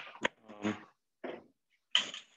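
A few short clicks and knocks as the handle of a stainless-steel steaming oven is worked and its door swung open, with a sharper metallic clack near the end.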